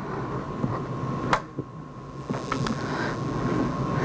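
Handling noise of a clip-on lapel microphone being fastened to clothing: rustling with a sharp click about a second in and a few smaller clicks past the halfway point, over a faint steady high tone.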